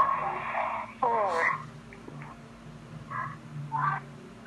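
Wordless vocal sounds from people on a video call, heard through a phone's speaker: a drawn-out pitched sound, then a short falling cry about a second in, and two brief vocal sounds near the end.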